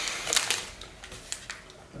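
A person chewing a mouthful of protein brownie bar, with scattered small clicks and crackles, the foil wrapper rustling in hand.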